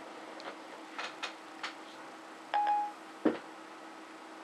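iPhone 4S Siri tone: a short electronic beep about two and a half seconds in, marking that Siri has stopped listening and is working on the question. A few faint handling clicks come before it and a single sharp knock shortly after, over a steady low hum.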